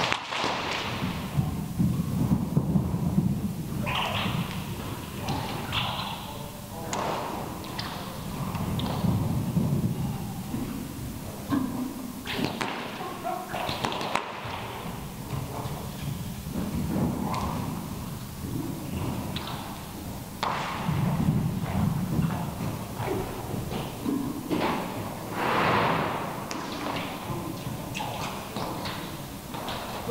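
A horse's hooves thudding on the sand floor of an indoor arena as it canters loose, with occasional faint voices.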